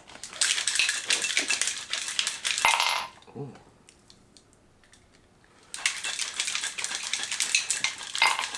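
Ice rattling hard inside a stainless-steel cocktail shaker as it is shaken, a fast, dense metallic clatter. It stops about three seconds in for a few seconds of near quiet, then starts again and runs on.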